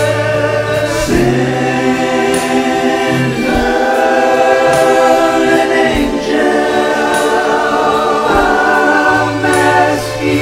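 A slow song with sung vocals layered like a choir, holding long notes over sustained chords and a bass line, with a faint tick about every two seconds.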